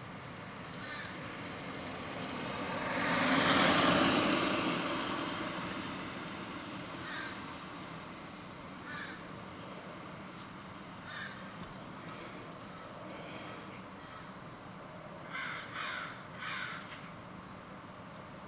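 A vehicle passing along the street, swelling and fading about four seconds in. Short bird calls come every couple of seconds, three in quick succession near the end.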